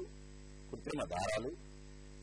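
Steady electrical mains hum on the recording, a low buzz made of several fixed tones, with a short spoken phrase about a second in.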